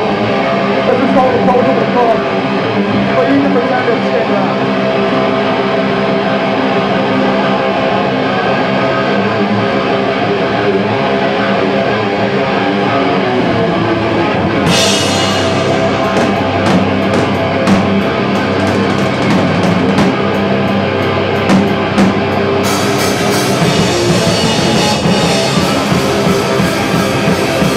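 Live hardcore punk band playing loud: the electric guitars ring out alone at first, then the drums come in with steady cymbal strokes about halfway through, and the full band comes in harder near the end.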